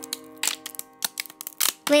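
A cartoon bone-rattling sound effect: an irregular run of dry clicks and clacks, like bones knocking together, over a held chord of children's song music.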